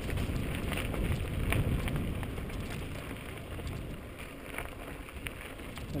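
Mountain bike riding down a dry dirt and gravel trail: the tyres crunch over loose stones and the bike rattles with small knocks. Wind rushes over the mounted camera's microphone throughout, and the sound eases a little in the second half.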